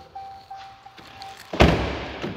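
A pickup truck door shutting with a solid thunk about one and a half seconds in.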